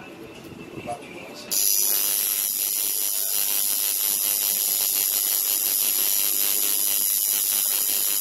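Coil tattoo machine buzzing steadily as it runs, starting abruptly about one and a half seconds in.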